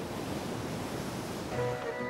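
Surf washing onto a sandy beach, a steady rush of noise. About one and a half seconds in, held music notes come in over it.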